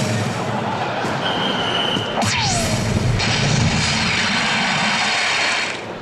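DARTSLIVE soft-tip dart machine sound effects: a dart hits the bull about two seconds in with a sharp electronic hit and a falling sweep. The machine's 'Hat Trick' award sound for three bulls in one round follows and cuts off just before the end.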